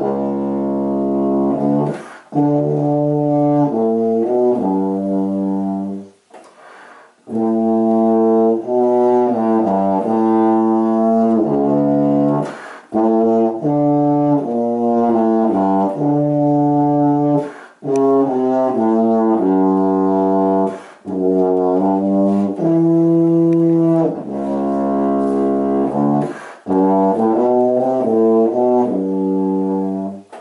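A tuba played solo: melodic phrases of separate low notes, broken by short gaps for breath, the longest about six seconds in.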